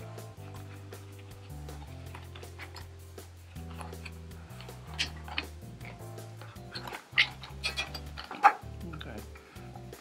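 Quiet background music of sustained low notes, with small clicks and rustles of a cardboard box being opened and a plastic remote and folded paper being taken out; the sharpest clicks come about five, seven and eight and a half seconds in.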